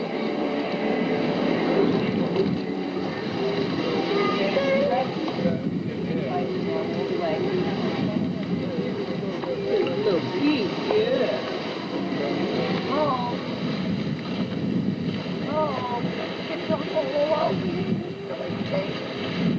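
Indistinct chatter of several people, no clear words, over a steady low rumble of background noise.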